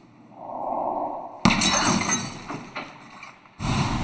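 Film sound effects: glass breaking in a sudden crash about a second and a half in, its debris ringing out, then another loud sudden burst of noise near the end.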